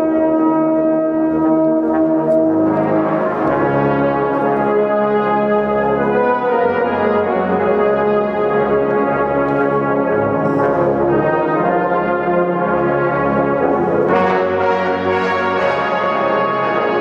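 A brass ensemble of trombones, trumpets and tuba playing a slow piece in sustained chords that change every second or two.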